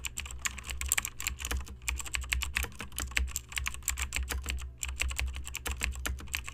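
Keyboard typing sound effect: rapid, irregular key clicks over a steady low hum, played under text appearing as if typed out.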